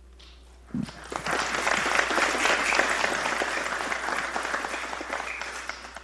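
Audience applause that breaks out about a second in after the tribute ends, keeps up steadily, and begins to die down near the end.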